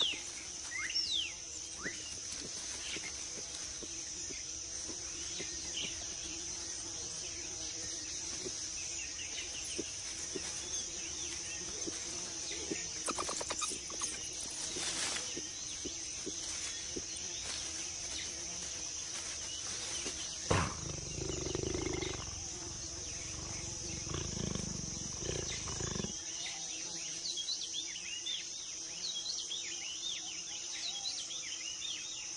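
Rainforest ambience: a steady high insect drone with scattered bird chirps. Over a few seconds past the middle a low animal growl sounds, then stops suddenly.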